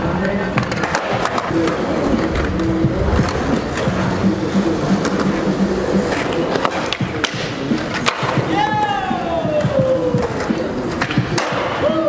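Skateboard wheels rolling on concrete, with repeated sharp clacks and knocks of the board, over background music.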